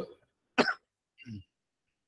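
A man clearing his throat, two short sounds: a sharp one about half a second in and a smaller, lower one just after a second.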